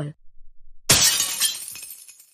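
Sound effect of a plate shattering on the floor: one sudden loud crash about a second in, dying away over about a second.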